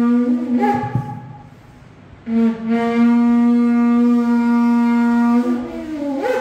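Shofar blown in long steady blasts. One note ends with an upward jump in pitch under a second in. After a short gap, a second long blast starts at about two seconds and rises in pitch at its end.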